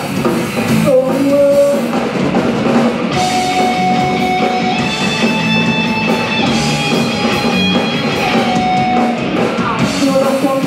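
Live rock band playing: electric guitars, bass and drum kit. From about three seconds in the vocal drops out and long held guitar notes ride over the band in an instrumental break.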